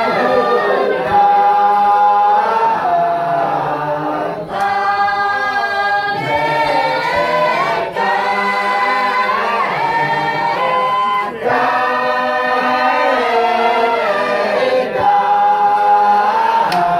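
A group of voices singing together without instruments, in long held phrases with short breaks for breath every three to four seconds.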